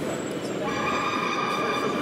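A steady whistle-like tone on one pitch starts just under a second in and holds for about a second, over background crowd chatter.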